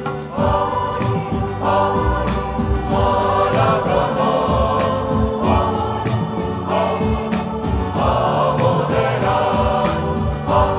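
Choir singing in parts with keyboard accompaniment, over a steady percussive beat.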